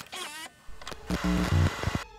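Old-film countdown transition sound effect. A short warbling tone comes first, then a mechanical clatter like a running film projector over hiss.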